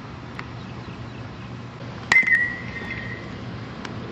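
A baseball struck by a metal bat about two seconds in: a sharp crack followed by a ringing ping that fades over about a second, a ground ball hit for fielding practice.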